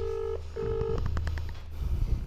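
A mobile phone's ringback tone as an outgoing call rings out. It gives two short beeps in quick succession near the start, the double-ring pattern.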